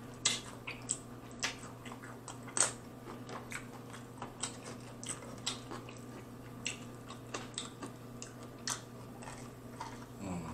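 Close-miked chewing and biting of crispy fried chicken wings: irregular crisp crunches and wet mouth sounds, the loudest crunches in the first three seconds.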